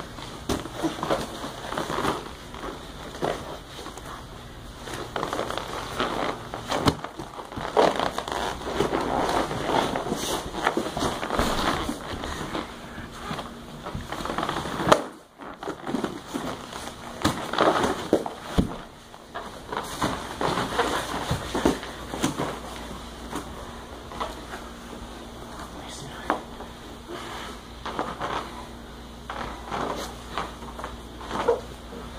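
Jiu-jitsu grappling on foam mats: gi cloth rustling, with irregular thumps and scuffs of bodies and limbs shifting on the mats throughout. The sound drops out for a moment about halfway through.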